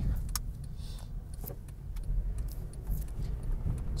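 Steady low rumble with a few faint clicks and taps, one about a third of a second in and another about a second and a half in.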